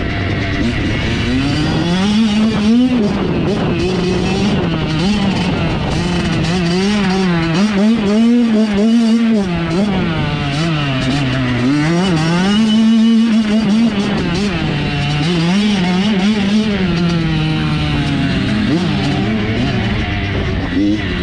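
Dirt bike engine, heard up close, revving up and down over and over as the rider rolls the throttle on and off along a dirt trail. Its pitch rises and falls every couple of seconds.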